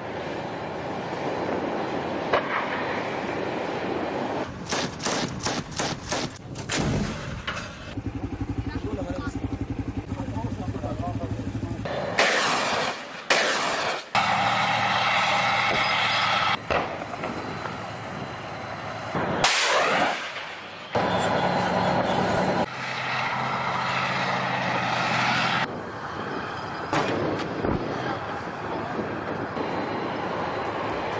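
Combat field audio: a quick series of gunshots about five seconds in, a tank's engine running, and several loud stretches of voices in the second half.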